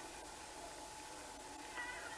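Faint, wavering crying of mourners over the steady hiss and hum of an old tape recording.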